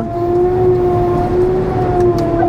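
Claas Jaguar 960 Terra Trac forage harvester running at work picking up grass, heard from inside the cab: a steady hum with one constant whining tone over even machine noise.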